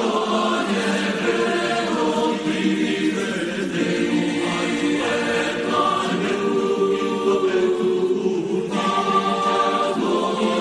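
Boys' school choir singing in parts, holding sustained chords that shift every second or two.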